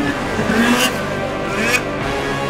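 Background music, with an engine revving in two short rising bursts over it: one about half a second in and a shorter one near the end.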